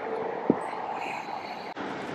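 Steady outdoor background rumble and hiss, with one sharp click about half a second in.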